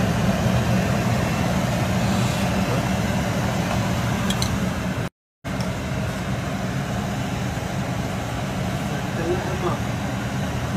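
A steady low mechanical hum, like a fan or motor running, which cuts out completely for a moment about five seconds in.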